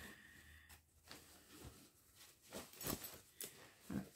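Faint rustling and soft handling noises of fabric being folded and tucked around a piece of needlework, a few short scattered sounds with the most distinct one near the end.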